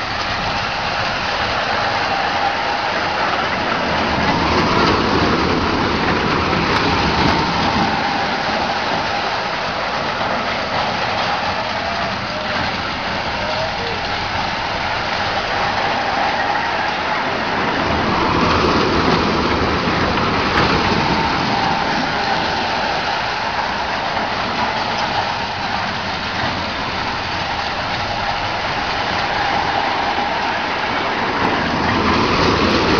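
Small kiddie roller coaster train rolling around its steel track: a steady rumble with a faint whine, swelling twice as the train comes round close by.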